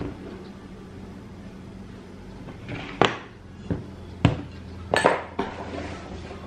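A handful of short, sharp knocks and clinks of hard objects set down on a tiled tabletop, about five of them in the second half, two standing out as loudest.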